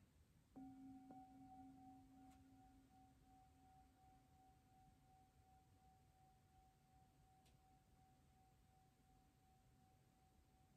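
A singing bowl struck once with a wooden striker about half a second in, ringing faintly with a low tone and a higher tone; the low tone dies away within a few seconds while the higher one rings on. It is struck to open a silent pause for reflection.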